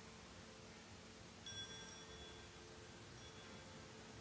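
A small bell struck once about a second and a half in, ringing faintly for about two seconds over near-silent church room tone.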